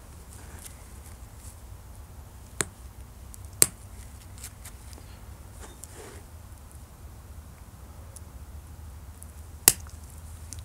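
Thin glass being pressure-flaked with a copper-tipped flaker: short, sharp snapping clicks as flakes pop off the edge, three loud ones (about two and a half seconds in, about three and a half seconds in, and near the end) with fainter small clicks between. The last snap detaches a long flake.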